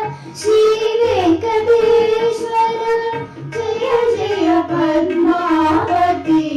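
A woman and young girls singing a song together in unison into a microphone, holding long notes with gliding changes of pitch, to a light tabla accompaniment.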